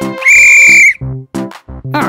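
A referee's whistle blown in one loud, steady blast of about two-thirds of a second, over upbeat cartoon music with a steady beat.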